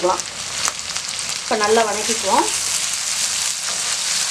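Shallots and curry leaves frying in hot oil in an aluminium kadai, a steady sizzle, stirred with a spoon near the end.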